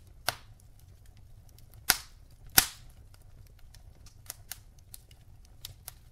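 Wood logs burning in a fireplace: a low, steady rumble of flame with scattered small crackles and three sharp pops, the first just after the start and the last and loudest about halfway through.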